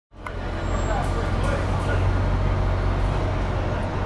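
Heavy diesel road-paving machinery running steadily with a low drone, with faint voices of workers in the background.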